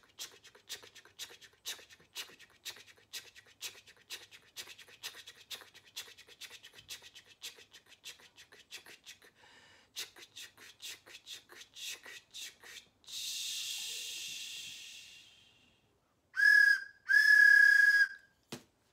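A person making a train's chugging with rhythmic 'ch' sounds, about three a second, then a long steam-like hiss. Near the end come two short blasts on a wooden train whistle, the loudest sounds here.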